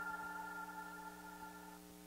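Outro music fading out: a held chord of several sustained tones slowly dying away.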